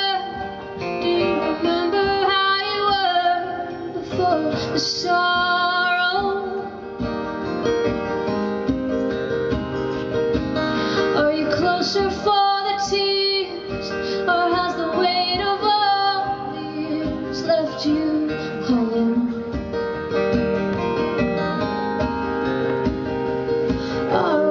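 Live acoustic duet: two acoustic guitars strummed under a woman's and a man's voices singing together, with long held notes.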